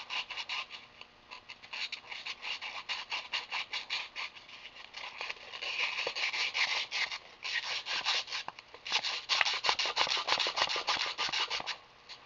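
Fine sandpaper rubbed over a small copper fitting in quick back-and-forth strokes, several a second, broken by a few short pauses. The copper is being scuffed clean before flux and solder go on.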